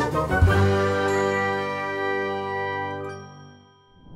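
Bright chiming musical sting: a quick run of ringing notes settles into a held, shimmering chord that fades away near the end.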